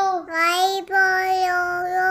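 A child's voice singing the phonics line "Y for yo-yo" in long, held notes, the last one drawn out.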